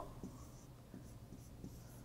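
A marker pen writing by hand on a board, with faint, short strokes in quick succession.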